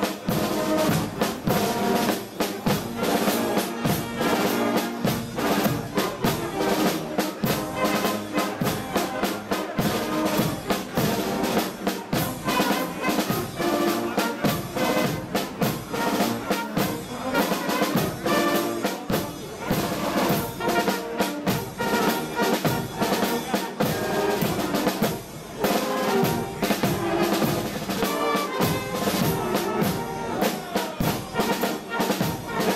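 A carnival guard's brass band playing, with trumpets and other brass horns over a steady beat of bass drum, snare drum and cymbals.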